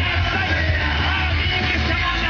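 Live rock band playing loud through a festival PA, with yelling over a steady, heavy bass.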